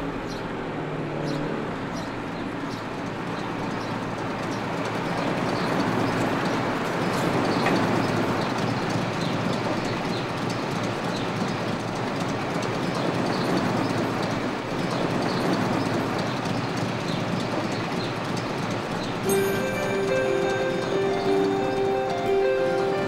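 Car driving over a cobblestone street: a steady rumble of tyres and road noise with a faint clatter. Music with long held notes comes in near the end.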